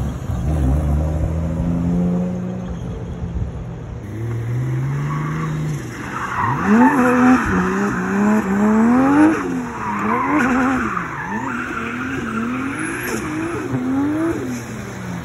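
A drift car's engine pulls away, its revs climbing through the gears. From about halfway the revs rise and fall again and again, with tyres squealing as the car slides sideways in a drift.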